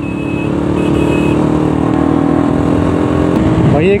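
Motorcycle engine running at a steady cruise with wind and road noise, getting gradually louder.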